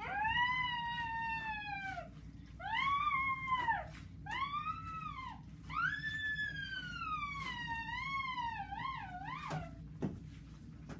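A high, whistle-like gliding tone sounding four times. Each call rises and falls in pitch, and the last and longest wavers up and down before stopping.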